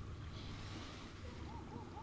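Quiet open-air ambience by the water: a low wind rumble on the microphone under a faint hiss, with a few faint short chirps near the end.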